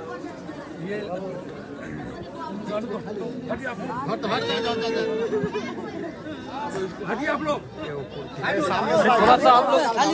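A woman wailing and crying in grief, with drawn-out, wavering cries that grow loudest near the end, over the chatter of a crowd.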